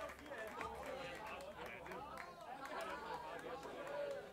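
Indistinct chatter of many voices talking at once, with no music playing, over a low steady hum.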